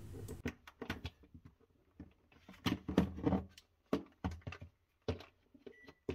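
Irregular plastic clicks and knocks from a Samsung refrigerator's ice maker unit being handled and plugged into its wiring connector, thickest near the middle.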